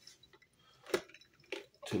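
A sharp single click about a second in, with a fainter one shortly after: the slow cooker's control knob being turned down from high to medium high.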